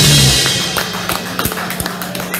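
Live rock band ending a song: the last chord and a cymbal crash ring out and fade away over the first second. A steady low hum and a few light taps are left.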